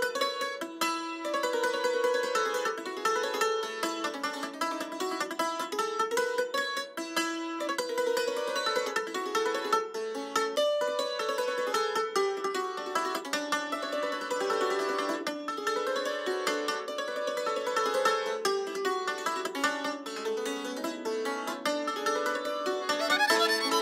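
A plucked string instrument playing a Transylvanian Hungarian verbunk (recruiting dance) tune, a quick run of notes with no bass underneath.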